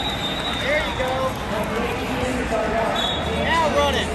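Background voices and crowd chatter in a large hall, with several short squeaks of wrestling shoes on the mat, a cluster about a second in and more near the end.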